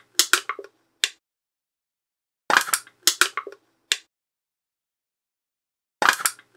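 Aluminium soda can being crushed: a quick run of sharp metallic crunches and crackles, heard twice, each run lasting about a second, with a pause of about a second and a half between.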